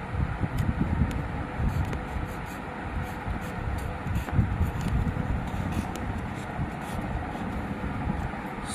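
An uneven low rumble, with faint short scratching strokes of a fine-tip felt marker writing capital letters on lined paper.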